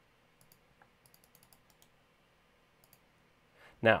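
Faint, scattered clicks of a computer mouse: a few single clicks and small quick groups, over quiet room tone.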